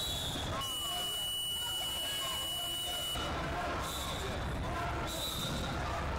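Electronic scoreboard clock buzzer sounding one steady high tone for about three seconds, starting just under a second in, as the wrestling period's clock runs out. Voices murmur in a large gym under it.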